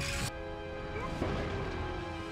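A short crash sound effect from the cartoon soundtrack right at the start, then background music with long held notes.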